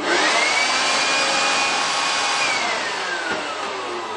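Small corded electric hand blower switched on, its motor whine rising as it spins up, then running steadily with a loud rush of air. About two and a half seconds in the whine begins to fall steadily as the blower is switched off and winds down.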